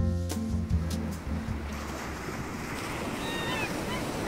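Background music ending within the first two seconds, giving way to a steady wash of waves and wind. A few short, falling bird cries come near the end.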